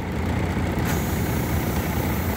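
Semi truck's diesel engine idling steadily, heard from inside the cab.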